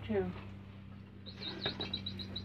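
Sound-activated toy birdcage with little wooden birds chirping: a rapid run of short, high electronic chirps starting about halfway through, set off by noise nearby. A steady low hum runs underneath.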